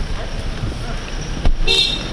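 A short, high vehicle horn toot near the end, just after a sharp knock, over a steady background of traffic and murmuring voices.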